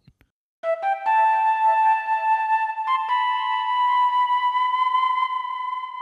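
Synthesized flute patch in u-he Zebra2 playing a few quick rising notes and then a long held note. The held note steps up slightly about three seconds in and starts to fade near the end, with a breathy hiss under the tone.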